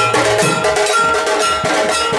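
Instrumental music: held melody notes over a steady percussion beat.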